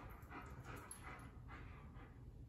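Faint sounds from a German Shepherd: four soft, breathy bursts, about two or three a second.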